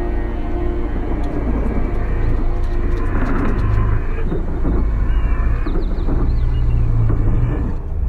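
A low rumble with a rough, noisy texture above it, and a few short high chirps in the second half; the song's steady music tones give way to this at the start.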